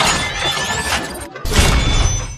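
Logo-reveal intro sound effects: shattering, crashing debris over music. The sound drops out briefly about a second and a quarter in, then a final loud impact hit lands and rings out.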